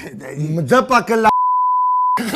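A man talking, cut off about two-thirds of the way in by a single steady beep, a broadcast censor bleep that blanks out all other sound while it lasts.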